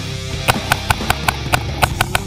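Rock music with a rapid string of about seven sharp paintball cracks, about a fifth of a second apart, starting about half a second in.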